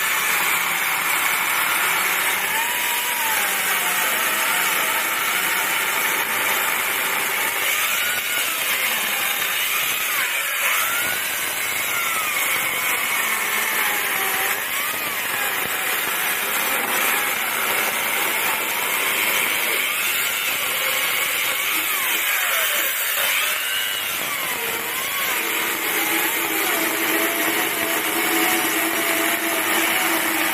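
Electric chainsaw cutting into a solid elm root, running without pause, its motor pitch dipping and rising over and over as the blade loads up in the wood and frees again. It is cutting out a marked rectangular opening in the root.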